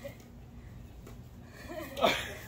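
Quiet outdoor ambience: a steady low hum with a few faint ticks, and a voice starting faintly near the end.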